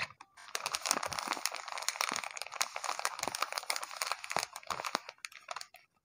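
Crinkling and crackling of a homemade paper blind bag as its tape-covered paper packet is pulled from the paper envelope and handled: a dense run of small crackles that thins out near the end.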